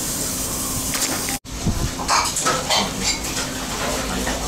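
Restaurant kitchen clatter: dishes and utensils clinking over a steady hiss. The sound cuts out for an instant about one and a half seconds in, and the clinks come after that.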